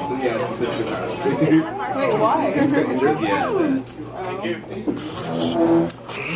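People talking, several voices overlapping in casual chatter.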